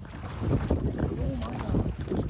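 Small waves lapping and knocking against the hull of a low floating layout boat, with wind buffeting the microphone. Low, indistinct voices come through in the second half.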